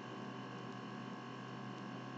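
Faint steady hum and hiss of the recording's background noise, with no other sound in the pause.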